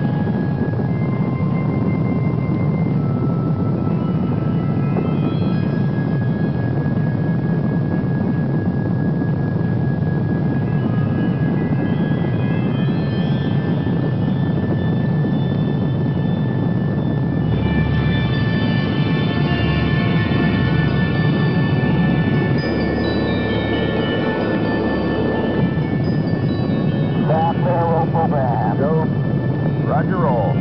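Rocket engine running just after ignition, a loud steady rumbling noise, with synthesizer music of held notes laid over it.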